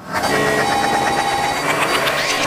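Electronic glitch sound effect for a logo reveal: a loud, dense burst of crackling, stuttering digital noise with a few brief held tones, starting suddenly out of silence.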